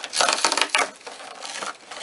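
Cardboard door of an advent calendar being torn and pulled open by hand: scratchy rustling and tearing in a few quick bursts, loudest in the first second and quieter after.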